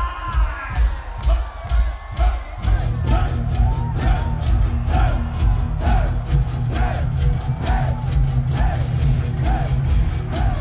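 Live heavy metal band at stadium volume: a steady pounding drum beat, with a sustained low bass and guitar note coming in about three seconds in. The crowd shouts along about once a second.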